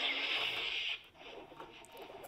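Star Wars Galaxy's Edge Jedi Holocron toy giving a hissing sound effect through its small speaker for about a second as a purple kyber crystal is inserted, then going quiet.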